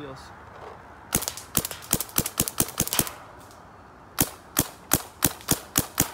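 Dye DSR paintball marker, fitted with a soft-tip bolt and Flex can, firing two quick strings of sharp shots at about five a second, with a pause of about a second between them. With this bolt the shot is a little quieter and feels softer, to the shooter's ear.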